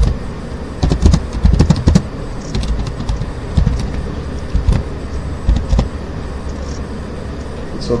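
Computer keyboard keys being typed, irregular clicks with dull thumps in a quick burst about a second in, then single strokes every second or so, over a steady low hum.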